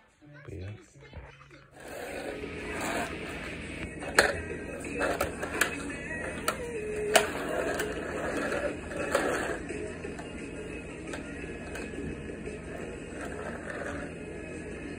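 Plastic toy cars rolled and pushed on a concrete floor: rattling wheels, with several sharp clicks and knocks as the toys bump, the loudest a little after four seconds in. A steady background noise runs under it.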